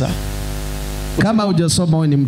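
Steady electrical mains hum with hiss from a public-address sound system, heard bare for about a second; then a man's voice comes in over the microphone.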